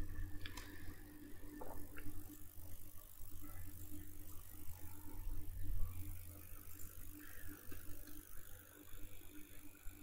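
Low steady hum of background noise, with a few soft computer-keyboard clicks in the first two seconds.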